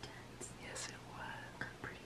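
Hushed whispering voice, faint.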